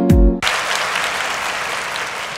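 The song's beat and bass cut off about half a second in, giving way to crowd applause that carries on and slowly fades.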